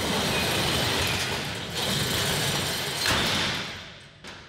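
Sound design for an animated logo outro: a rush of noise that starts at the cut, swells once about two seconds in and again about three seconds in, then fades out near the end.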